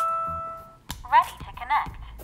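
Wyze Cam's built-in speaker finishing a rising three-note chime that rings on and fades out, then, about a second in, the camera's short synthesized voice prompt, 'ready to connect', the sign that holding the setup button has put it into setup mode.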